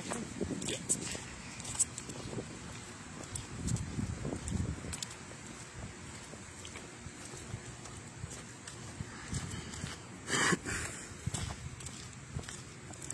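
Footsteps of a person walking outdoors over asphalt and then a brick path, with light scattered clicks, and one short, louder scuffing noise about ten and a half seconds in.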